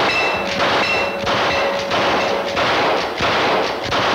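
Shooting-gallery rifle fired again and again, about seven shots a little over half a second apart, each a short rush of noise.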